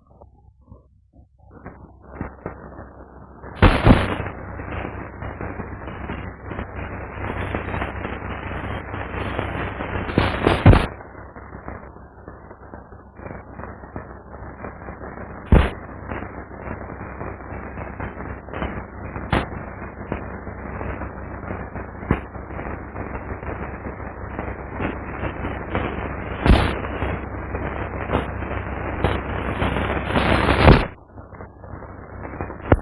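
Dense, continuous crackling noise that swells and dips, broken by about five sharp, loud pops spread through it.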